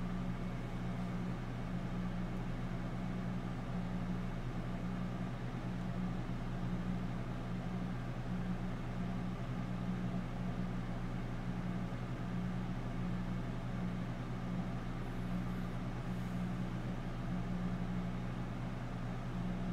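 A steady low hum over a faint even hiss, wavering slightly without stopping.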